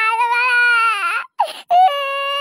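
A high-pitched cartoon voice wailing in one long held cry that breaks off just over a second in. A short sob follows, then a new wail starts near the end.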